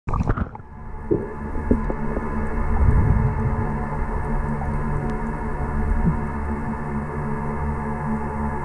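Muffled underwater sound from a submerged camera: a steady hum of many held tones over a low rumble, with a few knocks in the first half-second.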